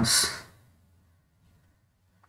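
A man's short breathy hiss at the very start, a trailing sibilant or exhale as his speech breaks off, then near silence: room tone.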